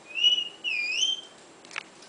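A person whistling two notes: a short, level note, then a longer one that dips and rises again.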